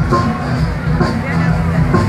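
Live country band playing, with a steady bass line, and voices over it.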